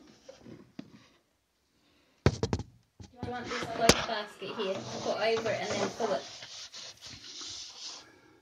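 Muffled, low talking with a few sharp knocks: one sudden knock about two seconds in and another, louder one near the middle.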